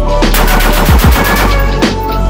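A rapid string of 5.56 rifle shots from a Geissele Super Duty AR-15, fired in quick succession for about a second and a half, over background music.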